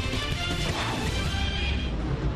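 Loud, dense television news ident music with sound effects, playing over a channel logo animation.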